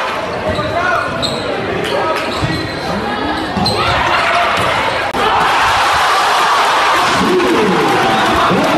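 Crowd sound in a school gym during a basketball game: spectators talking and calling out, with a basketball being dribbled on the hardwood court. The crowd gets louder about five seconds in.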